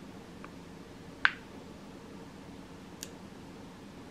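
Quiet room tone broken by one sharp click about a second in, with two much fainter ticks, one before it and one near the end.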